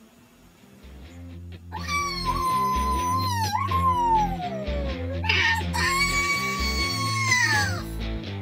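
Background music with a bass line and chords, over which a high voice wails in two long, drawn-out cries. The first cry slides slowly down in pitch. The second holds steady and drops away near the end.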